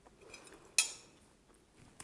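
Metal fork clinking once against a plate while cutting a piece of cake, a short sharp tap with a brief ring about a second in, after a few faint scrapes.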